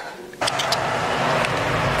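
Steady outdoor street noise, a rush of road traffic, starting abruptly about half a second in after a moment of near-quiet, with a few sharp clicks just as it begins.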